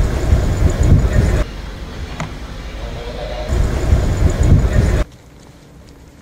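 Outdoor background noise with a deep, heavy rumble that changes abruptly several times, dropping to a much quieter hum for the last second.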